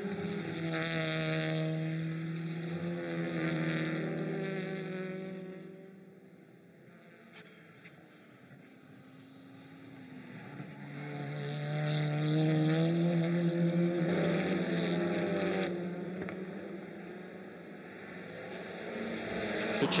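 TCR touring cars' turbocharged four-cylinder engines at race pace. The engine note falls and rises in pitch as they lift and accelerate, fades to faint about seven seconds in, then builds again, rising in pitch, from about ten seconds in.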